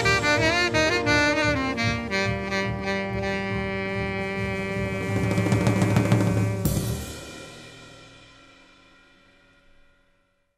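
Jazz quartet of tenor saxophone, piano, upright bass and drums playing the last bars of a tune. A quick saxophone phrase leads into a long held final chord over a cymbal swell, which ends with a sharp accent about seven seconds in and then rings out, fading to silence.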